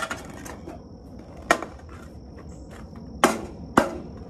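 Metal gutter end cap being pressed onto the end of a seamless gutter: three sharp clicks, one about a second and a half in and two close together near the end. A steady high insect trill, like crickets, runs underneath.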